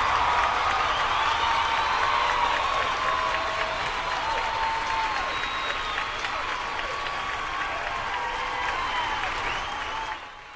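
Audience applauding, with a few shouts over the clapping, slowly dying down.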